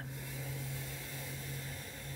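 A steady low hum with a faint even hiss under it, holding level throughout: the background noise of the recording in a pause between spoken lines.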